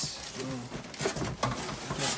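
Plastic air-cushion packaging rustling and crinkling as it is handled, with a few light knocks.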